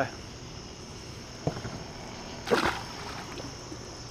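Crickets chirring steadily with a high, even buzz, with a faint click about a second and a half in and a short, louder knock or splash about two and a half seconds in.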